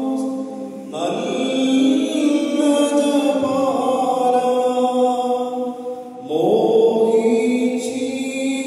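Voices singing an Orthodox liturgical chant in long, held notes, with a new phrase starting about a second in and another just past six seconds.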